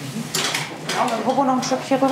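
Clinking and rattling of metal hospital equipment at a bedside, then a voice speaking from about a second in.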